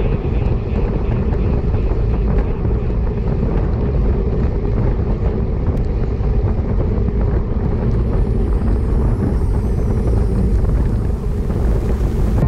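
Steady wind noise rushing over a bike-mounted camera's microphone as a road bike rides at about 40 km/h.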